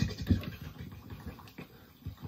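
Rhythmic vocal percussion: short clicky, scratchy mouth beats that grow fainter and die away about three quarters of the way through.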